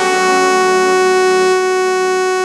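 Yamaha electronic keyboard holding one long, steady note rich in overtones.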